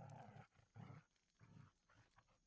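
A wolf growling faintly, three short growls in a row, from the soundtrack of an animated show.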